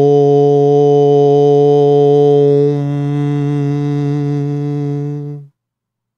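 A man's voice chanting a single long "Om" on one steady low pitch. It gets quieter about halfway through as the sound closes into a hum, and stops about five and a half seconds in.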